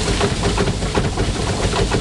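Wooden threshing machine running, a steady mechanical drone with fast, continuous clattering as its straw-walker rack shakes threshed straw out.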